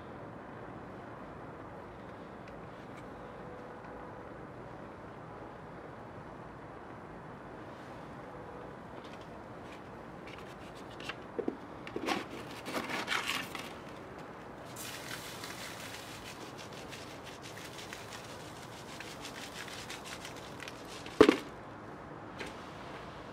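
Small fire burning a foam toy and plastic packets, with a steady low hiss and a cluster of crackles and pops about halfway through. Faint crackling continues, and one sharp, loud pop comes near the end.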